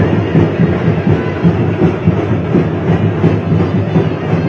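Loud, continuous drum-heavy procession music, with a dense, fast run of beats.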